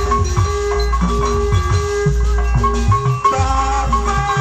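Live stage-band music played loud through a large sound system: quick drum strokes that bend downward in pitch under sustained melodic notes.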